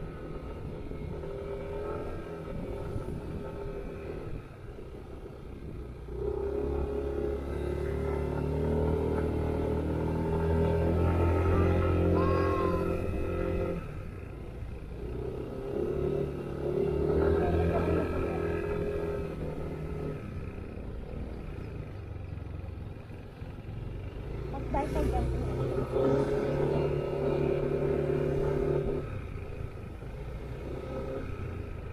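Yamaha NMAX 155 scooter's single-cylinder engine running under way. It pulls at steady revs in three long stretches and eases off in between.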